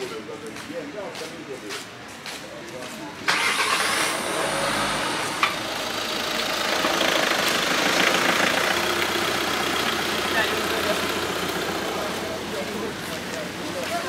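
A car engine starts about three seconds in and keeps running, getting louder for a few seconds and then easing off slowly, with people's voices in the street around it.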